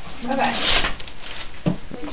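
People talking, with a short noisy rustle about half a second in.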